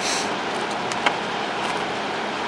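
Clear plastic shrink wrap crinkling briefly as a trading-card booster box is unwrapped by hand, with one sharp click about a second in, over a steady background hiss.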